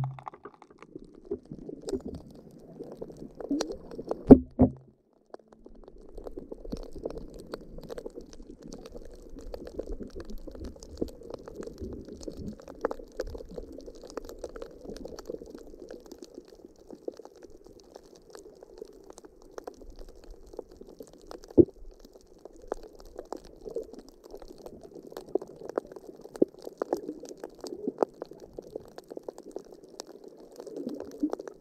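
Muffled underwater sound picked up by a submerged camera: a steady low wash of moving water, with scattered faint clicks and a few sharp knocks, the loudest a pair just after four seconds in and one a little past twenty seconds.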